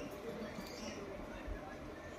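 Faint mouth sounds of a child chewing a spoonful of soft sweet vermicelli pudding, over quiet room tone, with a small low thump about one and a half seconds in.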